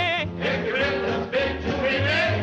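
Swing jazz band music with singing, a wavering held note at the start over a steady low beat.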